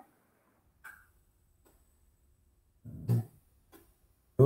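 A pause in talk: mostly quiet room tone, broken about three seconds in by a man's short wordless vocal sound.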